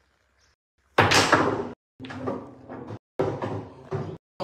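A sudden loud bang about a second in, with a short ringing tail.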